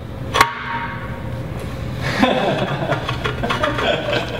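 A single sharp metallic clink with a brief ring about half a second in, from the inspection-door latch bar and bolt being fitted against the steel pot of a Clemco 1042 blast machine. Laughter follows from about two seconds in.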